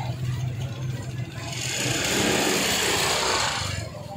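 Small motorbike engine running close by, joined about a second and a half in by a loud hissing rush that stops just before the end.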